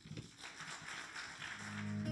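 Faint scattered audience applause, then a low sustained musical note swells in near the end as guitar accompaniment begins.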